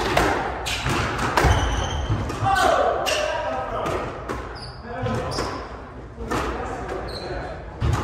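Squash rally: the rubber ball cracks off rackets and the court walls at irregular intervals, about once every half second to a second, with short squeaks of court shoes on the hardwood floor.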